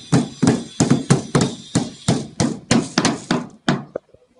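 Rapid hammer blows on a wooden board, about three sharp strikes a second, a dozen or so in a row, stopping just before the end.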